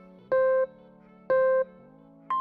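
Countdown timer beeping: two short, identical pitched beeps a second apart, over soft background music.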